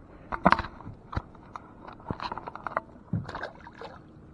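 A series of sharp knocks and scrapes against a small plastic fishing boat's hull, with light water sloshing, as a small bass is handled and let go over the side.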